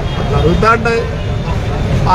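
A man speaking Telugu briefly, then pausing, over a steady low rumble of road traffic.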